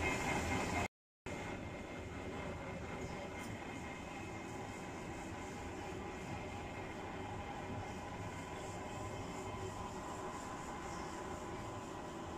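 Steady outdoor background noise, an even rumble and hiss with faint constant hum tones running through it, cut to silence for a moment about a second in.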